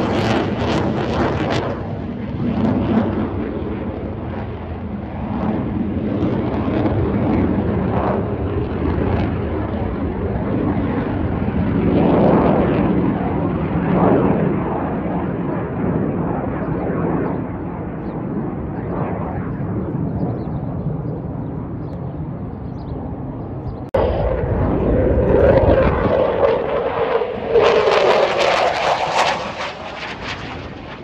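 Jet engine noise from a Blue Angels F/A-18 Super Hornet flying overhead: a steady roar that swells and eases, then grows louder and brighter near the end as a jet passes closer.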